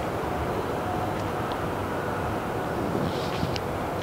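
Steady low outdoor background rumble, with a few faint high ticks about a second in and again near the end.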